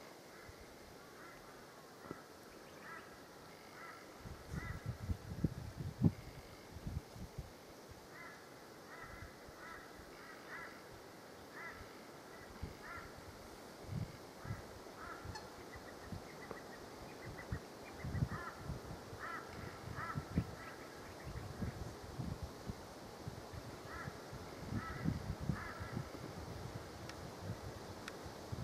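Faint bird calls: short calls repeated in quick clusters again and again, with intermittent low rumbles underneath.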